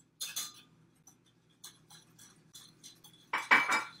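Scattered light clicks and clinks of kitchen utensils against glass mixing bowls, with a louder burst of clatter near the end.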